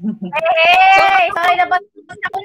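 A high-pitched voice holding one long, steady note for about a second, stopping just before the end.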